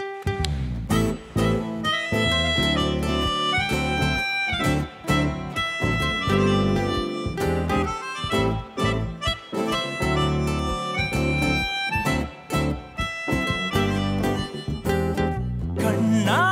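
Live acoustic band playing an instrumental passage: guitars and a steady percussion beat under a high melody of held notes. A voice starts singing right at the end.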